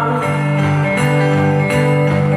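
Acoustic guitar strummed live, chords ringing on between strums that come about once a second.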